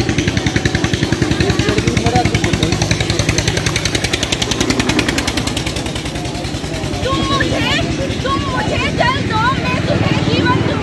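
A small engine running steadily with a fast, even pulse. From about seven seconds in, voices rise over it.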